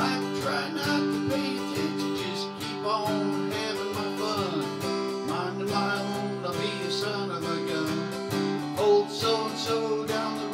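Acoustic guitar strummed in a steady rhythm in a country song, with a melody line gliding up and down above the chords.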